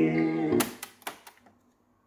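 A song playing from a Victor dual-cassette boombox's tape deck stops about half a second in as the stop/eject key is pressed, followed by a few plastic clicks and clacks as the cassette door pops open, then silence. The owner thinks this deck's pinch roller is slightly dirty and slipping.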